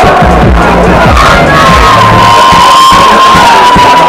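A crowd cheering and shouting over loud music with deep bass, including a long held note through the middle.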